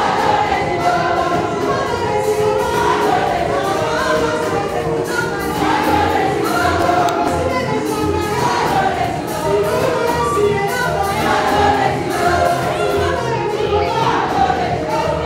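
A church congregation singing a gospel praise song together in many voices, over a steady low beat.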